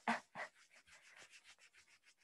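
Hands rubbing briskly over fabric: two louder strokes, then a rapid run of faint rubbing strokes, about six a second, fading away.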